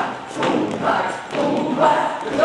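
Feet stamping and thudding on a wooden floor as a group steps around in a circle, with a group of voices singing along.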